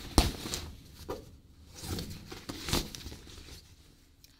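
Rustling and a handful of soft knocks from hands rummaging in a backpack to pull something out.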